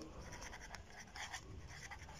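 Felt-tip marker writing on paper: a series of faint, short pen strokes as a word is written out.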